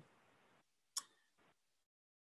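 Near silence, broken by a single short click about a second in and a fainter tick just after.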